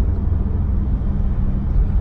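Subaru WRX STI's turbocharged flat-four engine running in third gear, with road noise, heard from inside the cabin as a steady low rumble.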